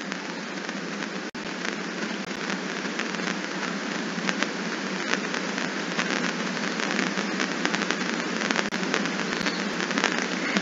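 A steady hiss of noise with faint scattered clicks through it, growing slightly louder towards the end.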